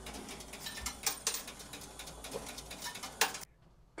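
New York City bus fare box counting deposited coins: its coin mechanism runs with a low hum and irregular clicks and ticks, then cuts off suddenly near the end.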